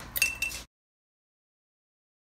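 A metal spoon clinks sharply against a glass mixing bowl, with a brief ringing tone, in the first moment; then the sound cuts out to dead silence.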